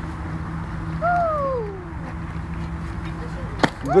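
A child's voice sliding down in pitch for about a second, over a steady low hum, with a single knock shortly before the end.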